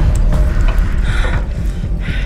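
Film-trailer sound design: a loud, steady deep rumble with scattered short clicks and knocks, and a brief scraping swell about a second in.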